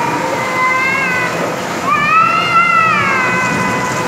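Two long, high-pitched squealing calls, the second louder and rising then falling, over the steady noise of the bumper-car hall.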